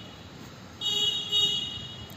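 Vehicle horn tooting twice in quick succession about a second in, a high steady tone each time, over the steady road noise of a moving vehicle.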